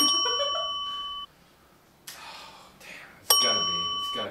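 Two dings from a bell-chime sound effect, each marking another 'damn' on a swear tally. The first rings for about a second and cuts off abruptly; the second comes a little over three seconds in.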